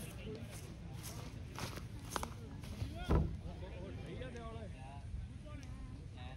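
Indistinct voices of people talking some way off, with one short, louder sound about three seconds in.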